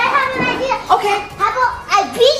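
A young boy's high-pitched voice, talking and exclaiming excitedly in play.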